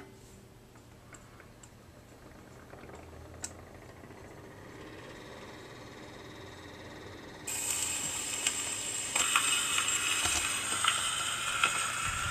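Wind-up Victrola 215 phonograph: a few light clicks as the turntable is started and spins up. About seven and a half seconds in, the needle drops onto the spinning 78 rpm record and a steady hiss and crackle of surface noise from the lead-in groove begins.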